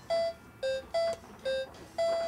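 Battery-operated toy piano keyboard playing short electronic notes as its keys are pressed: four notes, alternating between a lower and a higher pitch, about two a second.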